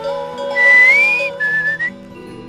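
A breathy whistled melody: one high note that glides upward, then a shorter, lower note near the end, over a soft instrumental music bed.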